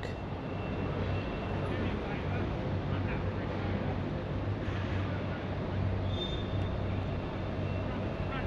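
Heavy goods lorry's diesel engine running at idle, a steady low rumble, with faint voices in the background.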